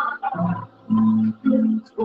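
A person's voice in three loud, short, low-pitched cries, each lasting under half a second.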